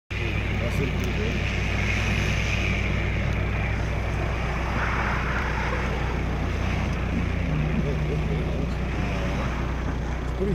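A car engine running with a steady low rumble under a wash of noise that swells briefly about halfway through.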